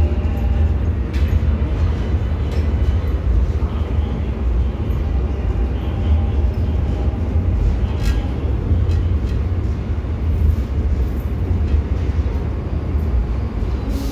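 Seoul Subway Line 1 electric train pulling out of the platform, heard through platform screen doors: a steady low rumble of wheels and traction gear with scattered clicks.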